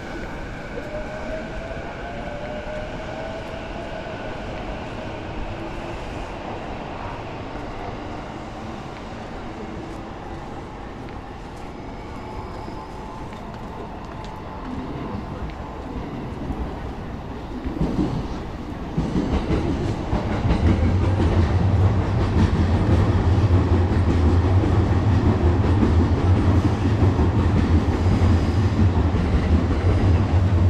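Electric train running on the tracks behind the wall: a faint whine gliding up in pitch at first, then, about two-thirds of the way through, a train passing close by, much louder and steady with a strong low hum.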